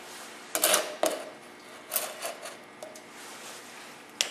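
Plastic bottles being picked up and set down on a wooden workbench: a handful of knocks and light clatters, the loudest just over half a second in.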